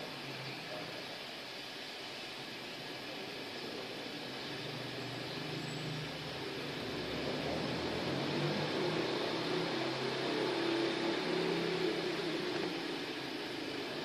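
Steady hiss of background noise with a low motor hum that grows louder from about six seconds in and eases near the end.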